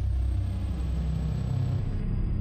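A low, steady rumbling drone, a produced intro sound effect under an animated title card.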